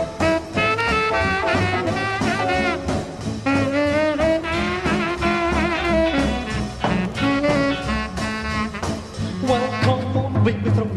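Instrumental break of a 1950s rock and roll song: a horn solo over a steady band rhythm, with no singing.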